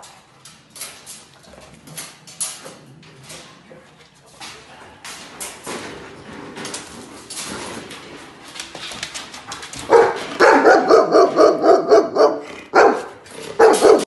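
A Bernese mountain dog barking loudly and rapidly, about three or four barks a second, starting about ten seconds in and going on to the end. Before that there are scattered clicks and knocks.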